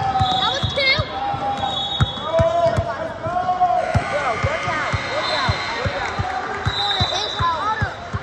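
Basketball dribbled on a gym floor, with repeated bounces throughout, and sneakers squeaking as players run the court. Voices carry in the hall.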